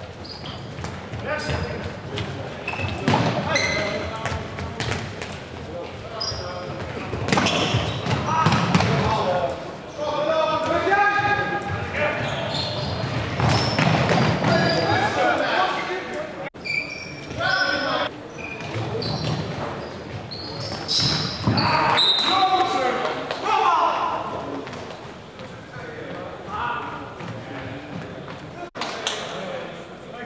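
Futsal players shouting to each other in an echoing sports hall, with the ball being kicked and bouncing on the wooden floor.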